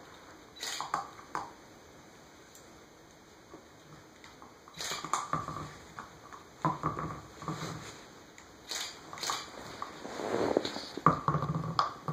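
Corgi puppy moving about on a hardwood floor with a rubber chew toy: scattered clicks and knocks from its claws and the toy on the boards, in irregular clusters, loudest near the end.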